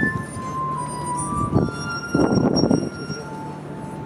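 Glass harp of water-tuned stemmed wine glasses, played by rubbing fingertips around the rims: clear, sustained singing tones, one note giving way to the next at a new pitch. A louder, rough, unpitched sound cuts in briefly about halfway through.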